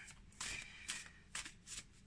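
A deck of cards being shuffled by hand: four short, faint rustles about half a second apart.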